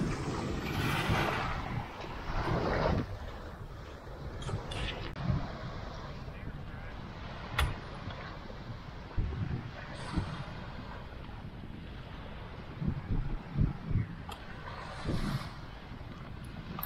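Wind rumbling on the microphone at the water's edge, with small waves washing onto the sand in the first few seconds. A few short, sharp knocks sound later on.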